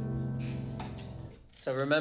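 Tenor saxophone with band accompaniment closing an improvised passage: the last notes are held and fade out about a second and a half in.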